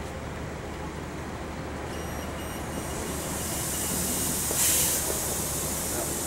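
City street traffic: a steady rumble that swells as a vehicle passes, with a short sharp hiss a little before the end.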